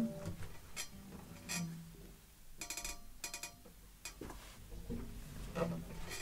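Quiet handling noise as one acoustic guitar is put down and another picked up: a few soft knocks and taps on the wooden bodies, with strings ringing faintly when bumped about halfway through.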